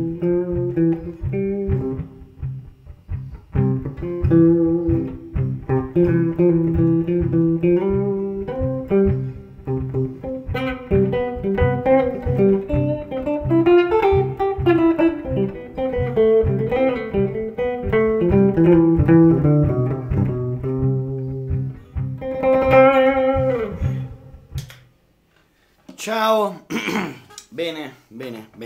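Jazz guitar solo played on an Ibanez hollow-body archtop electric guitar over a looped accompaniment on a C pedal, with runs of quick picked notes. The playing stops near the end, and a man starts talking.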